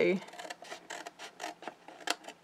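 Scissors cutting through white cardstock: a run of small, irregular snips and crackles of card.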